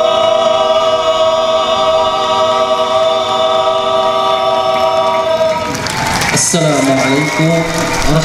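Young men of a qasidah group singing together, holding one long final note that stops about six seconds in. A single man's voice follows.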